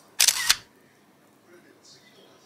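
iPhone camera app's shutter sound as a photo is taken: one short two-part click about a quarter of a second in.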